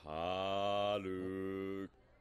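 A steady, droning pitched tone held for nearly two seconds. Its pitch shifts slightly about a second in, and it cuts off just before the end.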